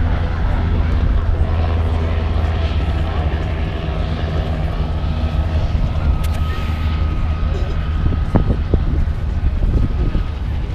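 Propeller aircraft engine running at a steady pitch, a continuous low drone, with people's voices over it.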